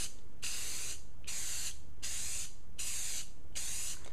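Aerosol spray paint can spraying in about five short, even strokes, each a hiss of roughly half a second with brief gaps between. These are light passes misting a first coat of paint.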